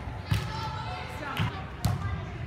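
A volleyball struck by players' hands and forearms, three short sharp smacks in a large hall: one in the first half second, then two close together in the second half.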